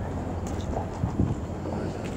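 Outdoor background of faint distant voices over a steady low hum.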